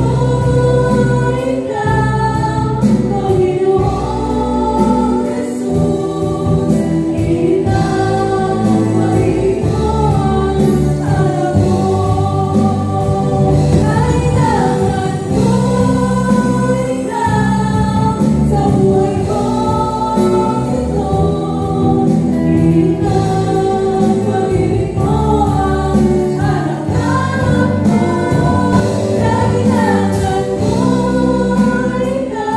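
A live band rehearsing a song: several female vocalists singing together into microphones over acoustic guitar, electric bass, keyboard and drums, continuously and at a steady loud level.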